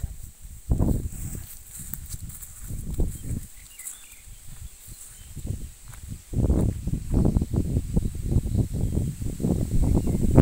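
Irregular low rumbling gusts of wind and handling noise on a phone microphone, getting louder and more continuous from about six seconds in, over a faint steady high-pitched whine.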